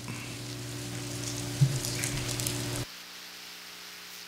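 Steady hiss from the church sound system with a low electrical hum under it, and a brief soft bump about one and a half seconds in. The hiss and hum drop abruptly to a lower level just before three seconds in.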